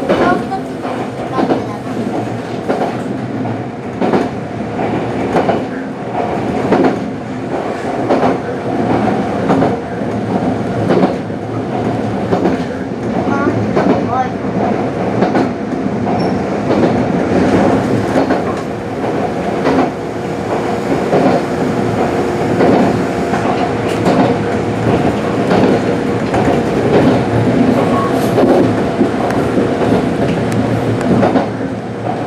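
Kintetsu electric commuter train running along the line, heard from inside the front car: wheels clicking over rail joints above a steady running hum.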